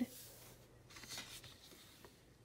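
Faint, soft rustling of planner paper as a hand brushes across the pages of a spiral-bound planner and lifts a page to turn it.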